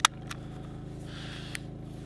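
Clicks from handling a camera body and its detached lens: one sharp click at the start, then a few fainter ones, over a steady low hum.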